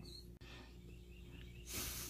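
Quiet room tone: a faint steady hum, with one sharp click about half a second in and a soft hiss near the end.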